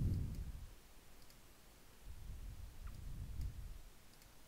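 A few faint computer mouse clicks over a low rumble.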